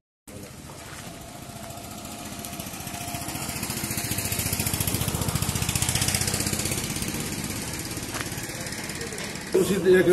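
A small engine running with a fast, even chugging pulse, growing louder toward the middle and fading again.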